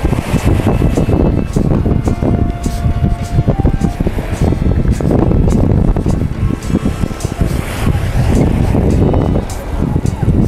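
Gusty wind buffeting the microphone, loud and uneven, over background music.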